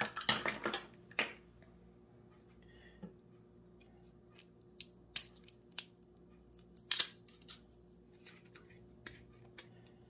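Scattered light clicks and taps of baking utensils and ingredient containers being handled, several close together near the start and a sharper single click about seven seconds in, over a faint steady hum.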